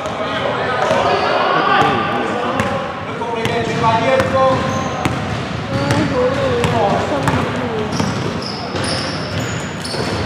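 A basketball bounces repeatedly on a wooden gym floor as a player dribbles it, under voices talking and calling out.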